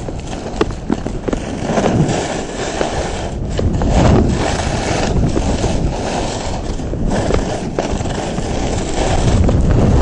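Skis sliding and turning down a packed snow slope, edges scraping the snow in swells every second or two, over heavy wind rumble on the microphone.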